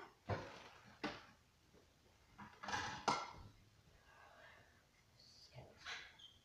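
Household clatter: a few short knocks and bumps from things being handled, the loudest about three seconds in.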